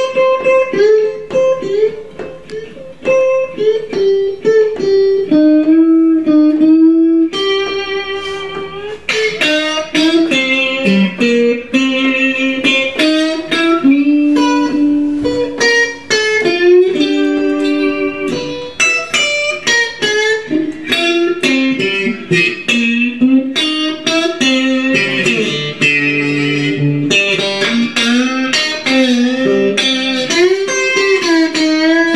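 2013 Squier Stratocaster electric guitar played plugged in: a run of picked single notes and short phrases, some held and some quick, with no strumming of full chords.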